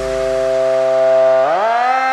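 Electronic dance music breakdown: a held synthesizer note with a siren-like sound, its pitch sagging slightly and then sliding up to a higher held note about one and a half seconds in, as the bass fades out in the first second.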